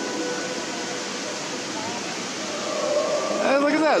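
Steady outdoor background noise with faint distant voices, and a man starting to speak near the end.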